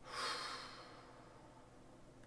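A single breath or sigh from a man, a short breathy rush that fades out within about a second.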